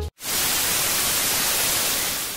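Television static hiss: a steady rush of white noise that starts a moment after the music cuts off.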